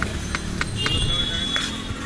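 Knife blade striking a plastic cutting board in repeated chops as a cucumber is sliced thin, over low street background noise; a high steady tone sounds for about a second in the middle.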